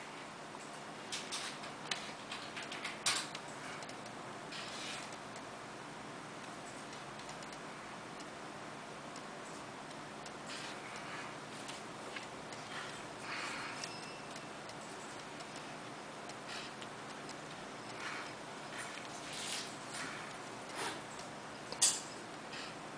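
Faint, irregular clicks and taps a few seconds apart, made as fingers tap and swipe the touchscreen of an Android tablet, over a low steady hiss.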